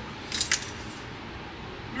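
A brief clink and rattle of metal hand tools handled on a wooden workbench, about half a second in, as a leather head knife is picked up from among them.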